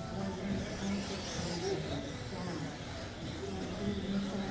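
Indistinct talking over a steady background of RC buggies racing on an indoor track.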